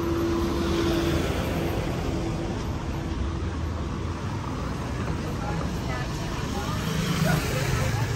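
Busy city street ambience: a steady hum of road traffic with passers-by talking, and a steady low tone that stops about a second in.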